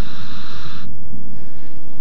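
Rushing wind, a loud hiss that cuts off abruptly a little under a second in, over a low steady rumble that carries on.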